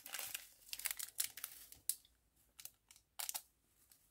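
Shredded paper packing fill rustling and crinkling as a hand rummages through it in a cardboard box, steady for about a second and then in short scattered bursts.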